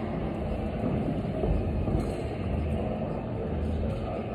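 Steady low rumble of background noise in a large gym hall, with no distinct event standing out.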